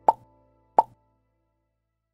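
Two short, pitched percussive hits about three quarters of a second apart, the last notes of the closing music.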